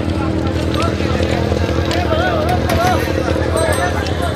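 A crowd of people talking and calling out at once, over a steady low engine-like hum.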